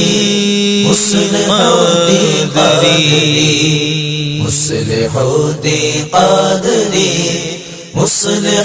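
Devotional vocal chanting from an Urdu manqabat: voices hold a steady low drone under a wavering sung line. Short bright swishes come about a second in, around the middle and at the end.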